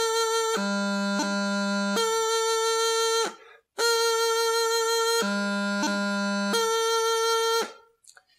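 Practice chanter playing the grip (leumluath) from high A twice: a held high A drops to low G, a quick D grace note cuts in, and the tune returns to a held high A. There is a short break between the two playings.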